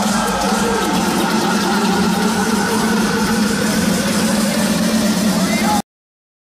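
Loud dance music and crowd noise at a DJ set, with voices shouting and singing along, cutting off suddenly just before the end.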